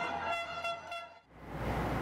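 A horn sounds one steady, held tone for a little over a second, then cuts off and gives way to a soft hiss.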